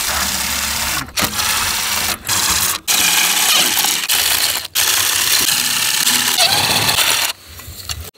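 DeWalt cordless impact driver with a 10 mm socket running in reverse, hammering as it backs bolts out of the solar panel's mounting feet. It comes in several runs separated by brief pauses and stops about seven seconds in.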